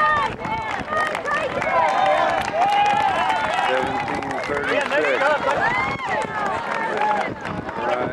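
Spectators shouting and cheering a runner in to the finish, several raised voices overlapping, with a long drawn-out call about three seconds in.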